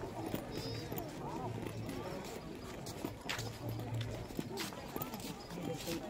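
Footsteps on stone paving, irregular clicks of shoes on the slabs, over the murmur of people talking at a distance.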